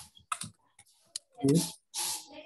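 Computer keyboard keys clicking in a run of irregular keystrokes as text is typed. A short burst of a man's voice comes about one and a half seconds in, the loudest sound here.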